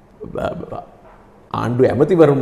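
A man speaking: a short vocal sound early on, a pause of about a second, then his speech picks up again about one and a half seconds in.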